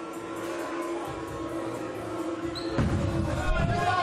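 A bowling ball released onto a wooden lane about three quarters of the way in, then rolling toward the pins with a low rumble. Before it, a steady held tone over faint crowd hubbub.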